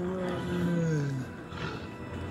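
A tiger's roar from a film soundtrack, heard through a television's speaker: one long roar falling in pitch that ends about a second and a quarter in, over background music.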